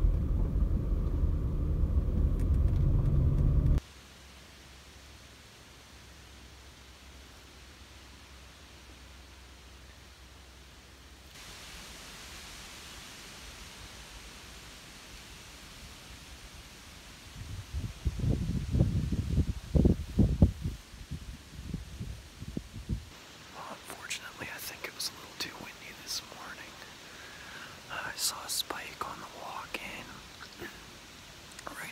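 A car running on a dirt road, heard from inside the vehicle, for the first four seconds until it cuts off abruptly to quiet woodland air. A few low rumbling bursts come about two-thirds of the way in, and near the end a man whispers to the camera.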